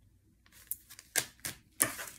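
About five sharp clicks and taps, beginning about half a second in, as tarot cards are laid down and tapped on a wooden desk by hands with long acrylic nails.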